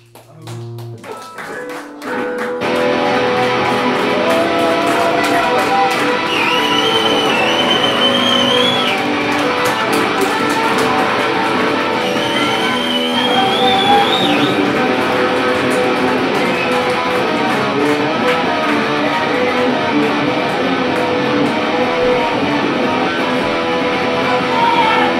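Live unplugged punk rock band starting a song: a few guitar strums, then the full band comes in about two and a half seconds in and plays on loud and steady, with two high sliding notes riding over it near the middle.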